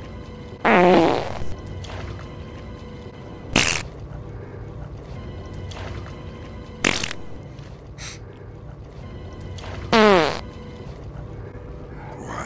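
Dark, steady film music with four loud, short sound effects cutting in about three seconds apart. The first and last are longer and slide down in pitch.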